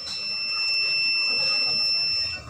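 Violin holding one long, very high note steadily at an even volume.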